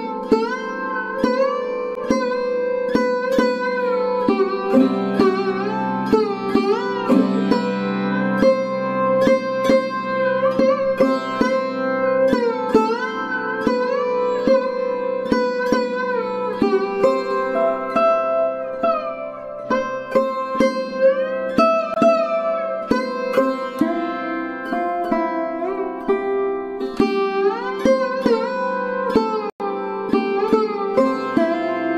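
Background instrumental music: a plucked string instrument playing a quick melody of struck notes with sliding pitch bends over a steady drone.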